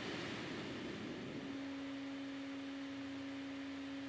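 A faint steady hum at a single pitch, beginning about a second and a half in, over low background hiss.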